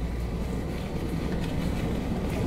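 Pickup truck heard from inside the cab while creeping across a harvested field: a steady low engine and road rumble.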